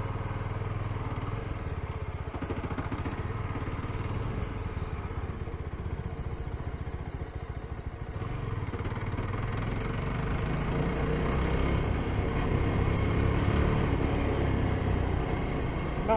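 Yezdi Scrambler's single-cylinder engine running as the motorcycle is ridden along a dirt track. Its sound dips briefly about halfway, then grows louder as the bike picks up speed.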